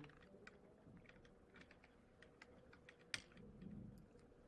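Near silence with faint scattered clicks of computer keys, and one sharper click about three seconds in.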